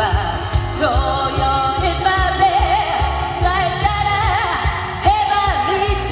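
A woman singing a Korean pop song live into a handheld microphone, her held notes wavering with a wide vibrato, over musical accompaniment with a steady bass beat.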